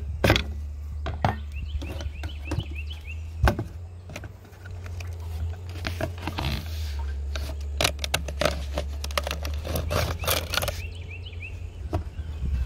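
Scraping, rustling and irregular clicks and knocks as fingers work a small debris-clogged fine mesh screen out of a plastic rain-gutter downspout outlet, over a steady low rumble.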